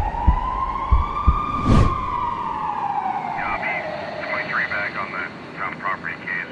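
Siren wailing slowly, its pitch rising for about a second and a half and then falling away over the next few seconds. A few sharp thuds come in the first two seconds, and indistinct voices are heard in the second half.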